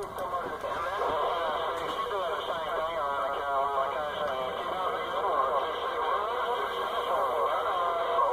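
Distant AM stations coming in on an 11-meter CB channel through a CB base radio's speaker: thin, garbled voices talking over one another, riding on skip with static, none of the words clear.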